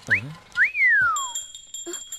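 A person's wolf whistle: a short rising note, then a longer note that rises and slides down. Steady high ringing tones, like a bell or chime effect, come in about halfway through.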